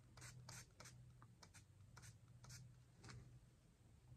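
About a dozen faint, short hissing spritzes at an irregular pace from a hand-pumped spray bottle being sprayed onto hair, over a low steady hum.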